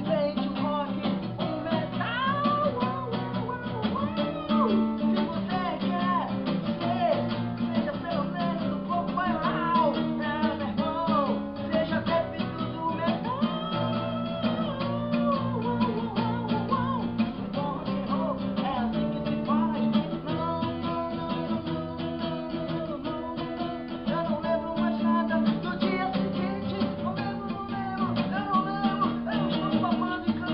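Acoustic guitar strummed steadily, with voices singing along.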